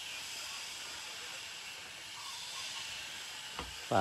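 Faint, steady outdoor background hiss with no clear source, and a brief low thump shortly before the end.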